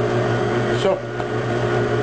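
KitchenAid tilt-head stand mixer running at a steady speed with a constant motor hum, its beater mixing a thin poolish of yeast, water, sugar and bread flour in a steel bowl.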